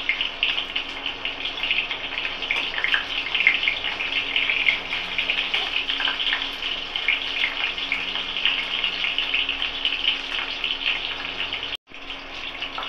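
Stuffed bitter gourds frying in hot oil in an aluminium wok: a steady, dense crackling sizzle that breaks off for an instant near the end.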